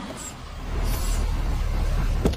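A car's engine rumbling deep and low, swelling about half a second in, with a short hiss around the middle.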